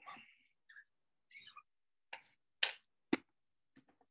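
A palette knife working ink on a fabric printing screen in a wooden hoop and going into an ink jar: a handful of faint, short scrapes and clicks, the sharpest near the end.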